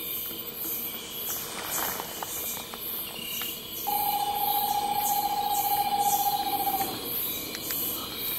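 A screech-owl gives one long call at a steady, fairly low pitch, lasting about three seconds from about four seconds in and dipping slightly as it ends. Under it runs a night chorus of insects, with a high buzzing that pulses about twice a second.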